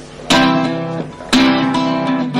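Acoustic guitar: two chords strummed about a second apart, each left to ring.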